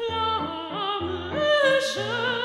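Soprano singing a sustained operatic line with a wide vibrato, stepping up in pitch about halfway through, over a piano playing evenly repeated chords.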